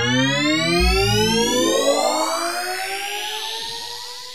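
Synthesizer intro sweep: a stack of tones gliding steadily upward in pitch, with a deep bass hit about a second in. A hissing noise swell builds near the end as the tones thin out.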